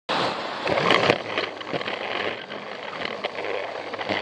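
Battery-powered Plarail toy train running on plastic track, heard from a camera riding on the train: a steady rattle of the motor and wheels with irregular clicks over the track joints, a cluster of louder clicks about a second in.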